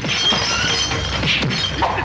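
Crockery and glass shattering and clattering among the blows of a fistfight, a dense run of overlapping crashes.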